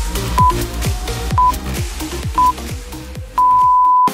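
Workout interval timer counting down: three short high beeps about a second apart, then one longer beep at the same pitch marking the start of the next work interval. Electronic dance music with a steady kick-drum beat plays under it.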